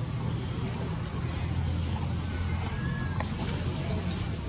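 Steady low hum of a running engine over outdoor background noise, with a faint short whistle-like chirp midway and a single sharp click near the end.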